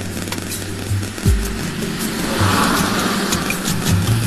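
Instrumental backing track of a Bollywood film song, playing between sung lines: steady low bass notes with a few soft low drum thumps.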